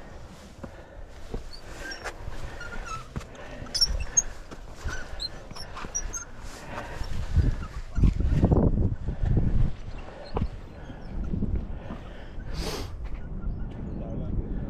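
A hiker's footsteps scuffing and clicking on sandstone, with low bumps from a body-worn camera, loudest about eight to ten seconds in.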